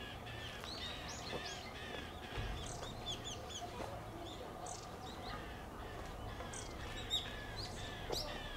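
Small birds chirping: many short, high notes, some rising and some falling, come in quick scattered runs throughout, over a faint steady background hum.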